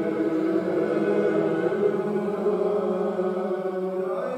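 Congregation singing a Gaelic metrical psalm unaccompanied, slow and drawn out on long held notes.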